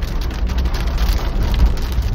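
Heavy downpour falling on a car's roof and windscreen, heard from inside the cabin over the steady low rumble of the moving car.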